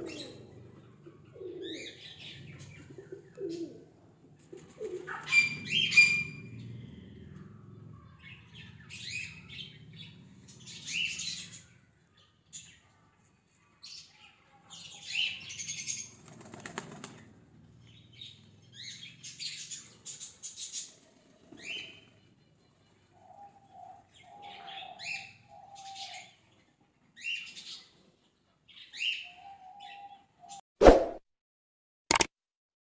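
Pigeons cooing in low, repeated pulses during the first few seconds, with short, high chirps and rustling bursts of bird sound scattered through the rest.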